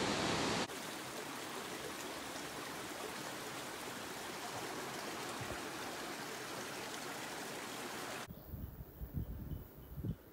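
Loud rush of a waterfall, which cuts under a second in to the quieter, steady babble of a shallow creek running over rocks. Near the end it cuts again to wind gusting on the microphone.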